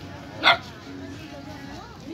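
A dog barks once, a single short loud bark about half a second in, over background chatter of voices.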